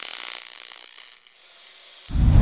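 Logo-sting sound effect: a bright, rapid high clicking that fades away over about a second and a half.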